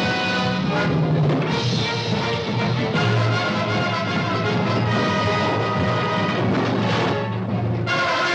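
Orchestral film-score music with brass and timpani.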